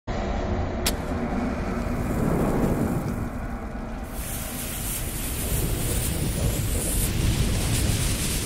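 Animated logo intro sound effects: a steady low rumble with a sharp click about a second in, joined about four seconds in by a loud hiss of burning fire as the flames sweep across, building toward an explosion.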